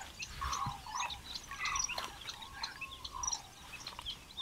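Birds chirping and calling all around, many short high calls overlapping, with light splashes of water as vegetables are swished by hand in a tub.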